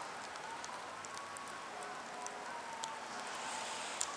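Steady rushing noise of wind and water across an open tidal river, with faint drawn-out calls from a distant flock of birds and scattered light ticks.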